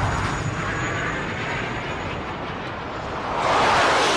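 Sound-effect rush of a missile in flight: a steady, noisy rushing sound that eases slightly, then swells louder near the end as it closes on its target.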